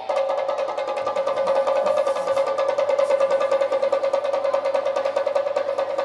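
Rapid, even drum roll on a rope-laced cylindrical drum struck with sticks, with a steady held note sounding over it.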